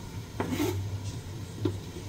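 Chopped onions being scraped off a plastic cutting board into a stainless steel stock pot: a rubbing scrape with a sharp tap about half a second in and a lighter tap near the end.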